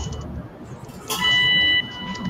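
Electrosurgical (diathermy) generator sounding its steady activation tone while current is applied to tissue during laparoscopic dissection. A short tone fades out just after the start, then a louder one sounds about a second in and lasts under a second.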